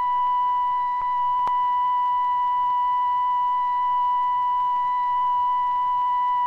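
A steady, unbroken electronic signal tone, one high pitch with a thin buzzy edge, marking the bomb-drop signal being sent. A faint click comes about a second and a half in.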